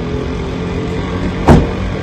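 A vehicle engine running steadily at idle, with one sharp thump about one and a half seconds in.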